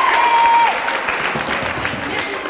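Applause from a crowd clapping, with a high held cheer that breaks off within the first second.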